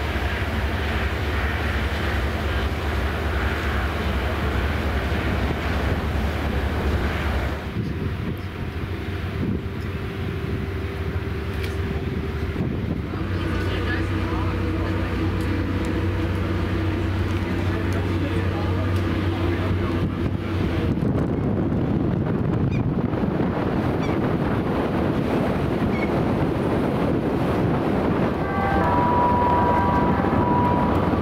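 Steady low drone of a ferry's engines and machinery, heard from the open deck. The drone changes character twice, about 7 and 13 seconds in, and a short high tone sounds near the end.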